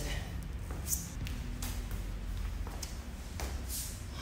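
A man's short hissing breaths and movement over a low steady room hum, with a light tap about a second in, as he recovers between drop sets of a leg workout.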